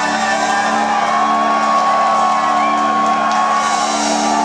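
Live rock band with keyboard and guitars holding a sustained chord to close a song, with a few whoops and shouts from the audience.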